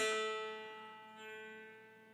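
A single note plucked on a mountain dulcimer at the fourth fret, ringing and slowly fading. It is a tuning check on a freshly installed string that is being brought up to pitch.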